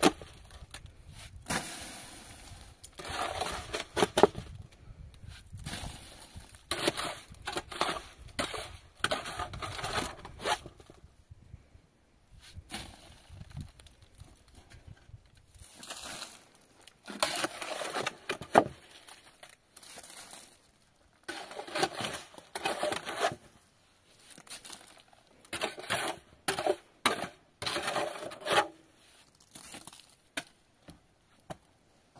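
Shovel scraping and scooping wet mortar in a metal basin and working it onto a roof, in repeated rough strokes that come in runs with short pauses.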